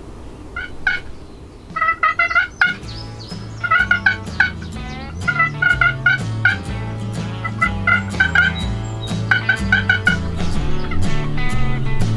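Wooden box turkey call worked in runs of short, rapid yelps, several series one after another. From about three seconds in, background music with a bass line plays under the calling.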